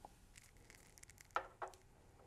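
A few faint clicks and taps of small hardware being handled, with two sharper clicks a little past halfway.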